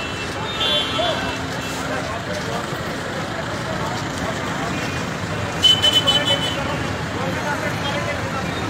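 Street traffic noise with voices of a crowd. A vehicle horn toots briefly about a second in, then a quick series of short horn beeps sounds a little past the middle, the loudest sound here.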